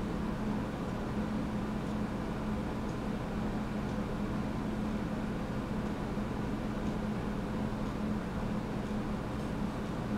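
Steady low hum over an even background hiss.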